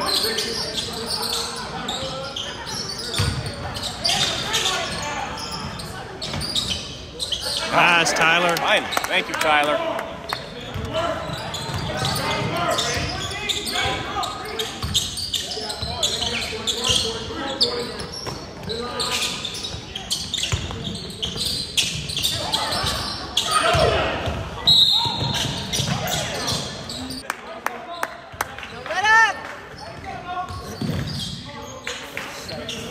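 Basketball dribbled on a hardwood gym floor, repeated bounces amid the shouts and calls of players and spectators, echoing in a large gymnasium.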